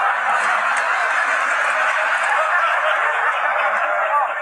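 Sitcom studio audience laughing: a dense, loud, sustained laugh from many people.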